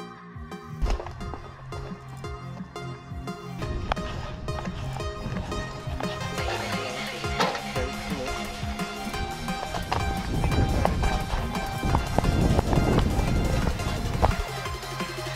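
Background music with a steady beat, gradually growing louder.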